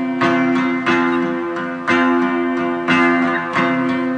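Guitar chords strummed in an instrumental passage with no voice. A strong stroke falls about once a second, with lighter strokes between, and the chords ring on in between.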